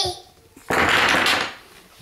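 Small toy blocks spilled onto a hardwood floor: one brief clatter of blocks hitting the boards and each other, lasting under a second.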